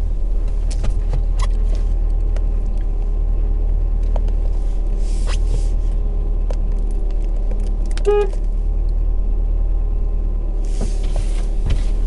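Car engine idling with a steady low rumble inside the cabin, and a single short beep of the car's horn about eight seconds in.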